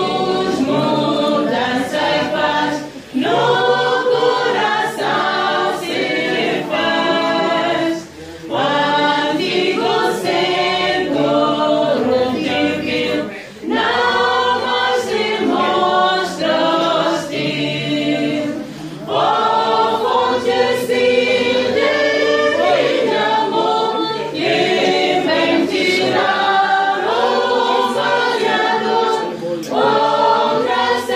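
Group of voices singing a hymn together, in long phrases with brief breaks between them.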